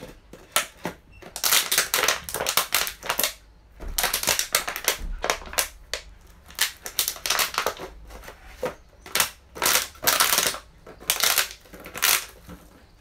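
Close rustling and crackling right against the microphone, coming in irregular bursts of a second or so with short pauses between them.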